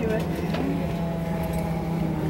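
Yak-40's three Ivchenko AI-25 turbofan engines running with a steady hum as the aircraft taxis, heard inside the cabin. Faint voices are heard briefly in the first half.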